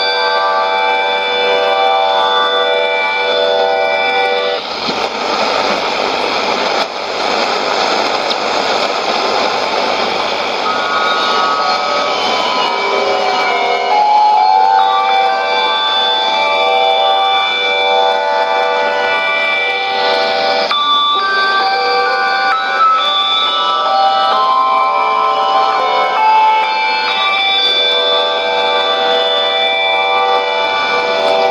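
Music received on a shortwave AM broadcast, heard through the speaker of a Sony ICF-2001D receiver. A rush of static partly covers the music for several seconds, starting about five seconds in.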